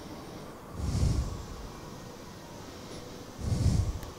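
Two breaths blowing onto the microphone, about a second in and again near the end, over a steady low background hum.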